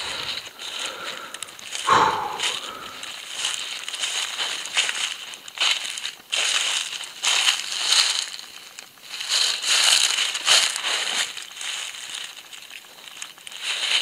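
Footsteps crunching through dry leaves and grass, an irregular crunch about every second.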